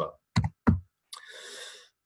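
Two sharp clicks about a third of a second apart as the presentation slide is advanced, followed by a soft breathy hiss lasting under a second.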